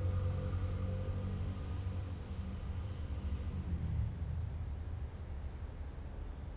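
A steady low hum of background noise. A faint tone fades out within the first second or so.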